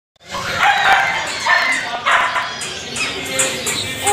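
Dogs barking repeatedly, a bark about every half second to second, with people talking over them.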